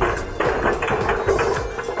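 Background music with a steady held note.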